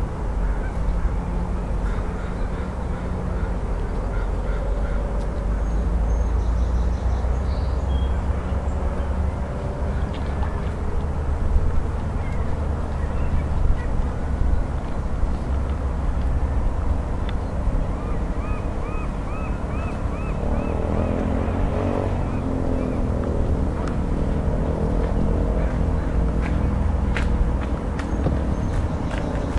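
A steady low rumble with outdoor ambience, and about two-thirds of the way through, a quick run of about eight short calls from waterfowl.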